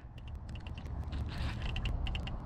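Baitcasting reel clicking and ratcheting in quick irregular bursts while a hooked fish pulls on the line, over a low rumble that grows louder.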